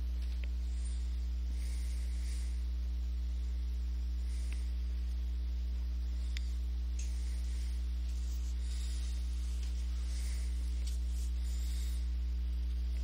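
Steady electrical mains hum with a few faint overtones, carried on the recording's audio. A few faint ticks come through it.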